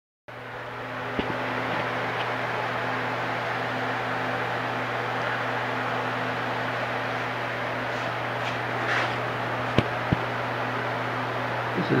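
Steady hum of a running electric machine, a low tone under an even whir, with a few light clicks about a second in and twice near the end.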